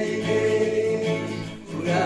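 Several male voices singing together to acoustic guitars. A long held note opens, the sound dips briefly about one and a half seconds in, and the next sung line starts near the end.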